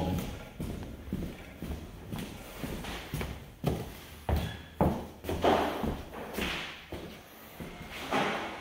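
Footsteps on a bare, freshly sanded hardwood floor: a string of irregular thuds as someone walks through the rooms.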